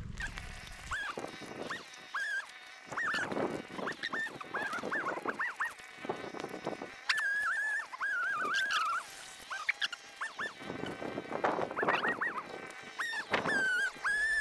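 Animal calls: many short, high calls with wavering, gliding pitch, coming in clusters.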